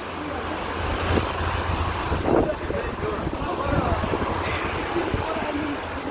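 Street traffic passing on a wet road: a steady hiss of tyres on wet asphalt, with wind rumbling on the microphone, strongest in the first couple of seconds.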